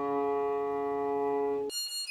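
Cello bowed on a long, steady held note that cuts off abruptly near the end. A high-pitched melody of quick short notes takes over.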